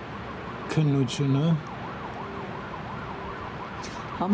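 A distant emergency-vehicle siren wails up and down in quick rising and falling sweeps over a low hum of city traffic. A voice is heard briefly about a second in.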